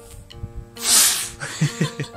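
A small boy's sudden, loud, sneeze-like burst of breath about a second in, followed by brief voice sounds, over steady background music.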